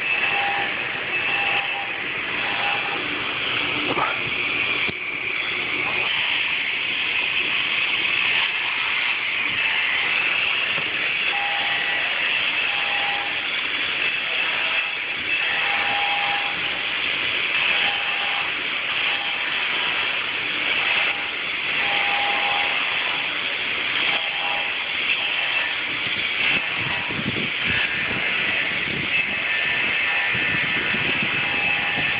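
A power tool working granite: a steady, loud hissing noise throughout, with a whistling tone that comes and goes.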